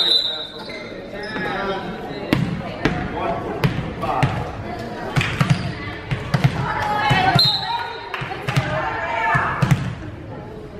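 A volleyball bounced repeatedly on a hardwood gym floor, a series of sharp thuds a second or so apart, among people talking and calling out.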